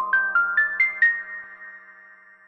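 Short synthesized outro jingle: a quick run of notes climbing in pitch, about five a second, the highest and last one about a second in, then ringing on and fading out.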